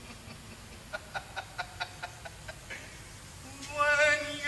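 A man laughing in a run of short, evenly spaced bursts, about five a second, over a couple of seconds, followed by a man starting to speak near the end.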